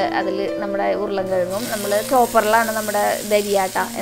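Background song with vocals. From about a second in, food starts sizzling in hot oil in a kadai as chopped beetroot goes in on top of the fried chilli flakes.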